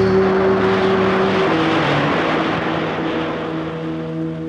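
A loud rushing hiss, a film sound effect for a magical puff of smoke, slowly fading. Held orchestral notes sound under it and change pitch about a second and a half in.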